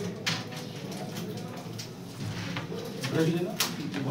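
Carrom coins clicking as they are set in the centre of the board, with a sharp click near the end.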